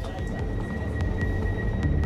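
Train door-closing warning: one steady high tone, held without a break, over a low rumble, with a few faint clicks.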